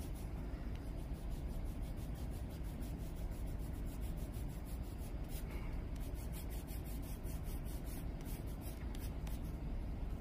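Light blue colored pencil scratching on paper in quick, short, repeated shading strokes, several a second.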